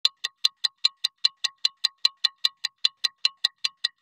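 A ticking sound effect: rapid, evenly spaced metallic ticks, about five a second, each with a short bright ring.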